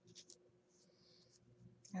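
Faint handling of tarot cards: a couple of soft taps, then a card sliding across the surface for about half a second as it is laid down, over a faint steady hum.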